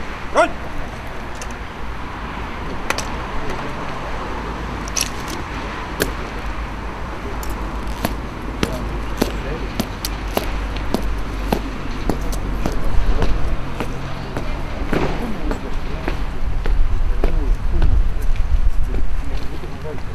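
Open-air crowd ambience with faint murmuring and a low rumble, broken by scattered sharp clicks and taps from an honour guard's boots on stone paving and rifles being handled as the guard takes position.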